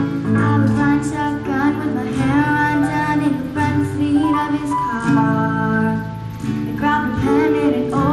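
A girl singing a pop song live to her own strummed acoustic guitar, with keyboard accompaniment; her notes are held and change every second or so.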